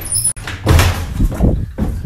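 Jumbled thumps and rubbing noise from a hand-held phone being swung about quickly, with a sharp click about a third of a second in.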